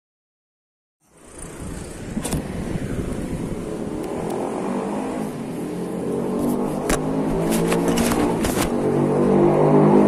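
A motor engine running and growing steadily louder, after a second of silence at the start, with a few sharp clicks in the middle.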